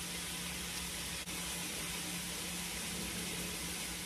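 Steady hiss with a steady low hum underneath: background room noise, with no distinct event.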